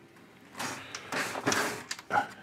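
Plastic inkjet printer mechanism being moved by hand, the print-head carriage sliding along its rail, in three short sliding, scraping strokes.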